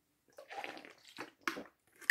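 A person drinking water from a plastic sports bottle: faint sloshing and swallowing, with a short sharp sound about one and a half seconds in.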